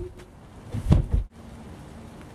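A dull thump about a second in as a large curved coroplast (corrugated plastic) panel tips over onto the grass, followed by steady faint outdoor background.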